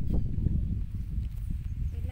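Low, irregular rumble of wind buffeting the phone's microphone outdoors, with a few faint ticks.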